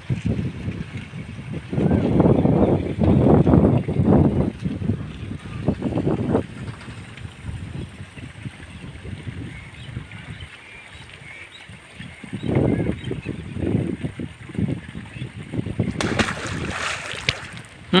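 Wind buffeting the camera microphone in irregular low gusts, strongest twice. Near the end there is a brief loud, hissy rustle.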